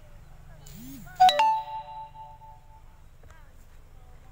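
A sudden bell-like ding just over a second in: two quick ringing notes that die away over about a second and a half, over a low steady rumble.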